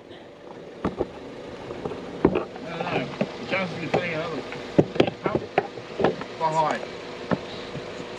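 Faint steady hum of the car's electric fuel pump running with the key on, broken by several sharp clicks and faint distant voices.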